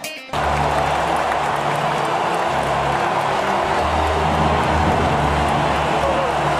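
Stadium crowd noise: the steady roar of a large crowd in the stands, with a low drone that comes and goes beneath it.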